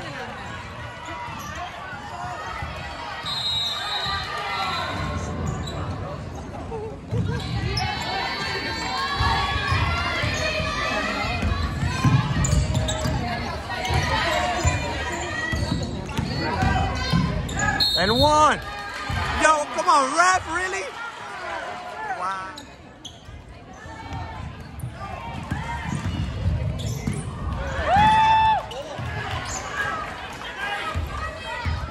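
Basketball dribbled on a hardwood gym floor during play, with players and spectators calling out across the gym and a loud shout near the end.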